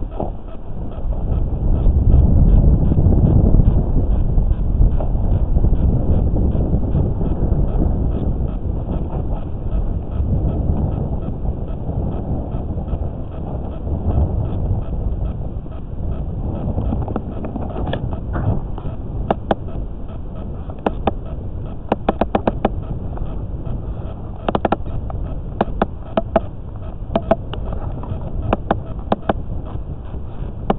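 Low rumbling noise picked up by an underwater camera beneath the ice, with a fast, even electronic ticking above it and a run of sharp clicks over the last dozen seconds.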